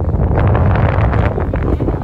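Wind buffeting a phone microphone: a loud, gusty low rumble with crackling.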